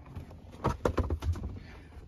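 A quick run of light clicks and knocks over a low rumble: handling noise as the removed plastic seat-back panel and the camera are moved about.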